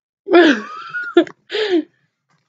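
A woman's wordless vocal outburst: one long drawn-out sound followed by two short bursts of laughter.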